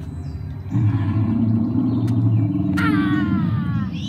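Animatronic dinosaur's recorded roar played through its loudspeaker: a deep, low growl that starts suddenly about a second in and holds. Near the end a voice cries a falling "ah".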